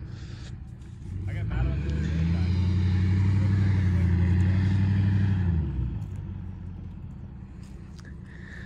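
Tow vehicle's engine working under load to move a long enclosed car-hauler trailer across loose sand. The engine note swells about a second in, holds steady and loud for a few seconds, then dies back about six seconds in.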